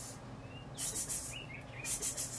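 Faint, short bird chirps in a quiet pause, with two soft bursts of hiss, one about a second in and one near the end.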